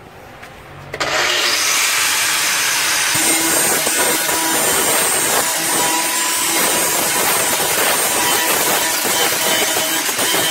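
Angle grinder starting about a second in and then grinding steadily on the floor of a 1940 Ford's body, taking spots down to bare metal so that bracing can be welded in.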